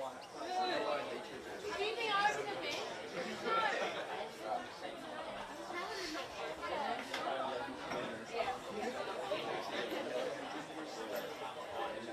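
Indistinct chatter of several people's voices overlapping, with no single clear speaker.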